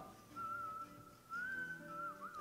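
Faint background music: a high, whistle-like melody line holding long notes with a slight rise and a small waver near the end, over soft sustained lower notes.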